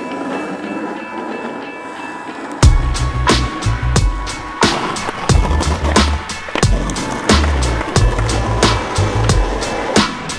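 Skateboard wheels rolling on asphalt. About two and a half seconds in, music with a heavy bass line and a steady drum beat starts.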